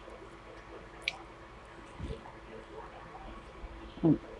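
Faint eating sounds from a person chewing a mouthful of rice and fish, with small wet mouth sounds. A small click comes about a second in and a soft low thud about two seconds in.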